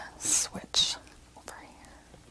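A woman makes two short, breathy, whisper-like sounds, one about a quarter second in and one just before the one-second mark, while holding a forearm and wrist stretch.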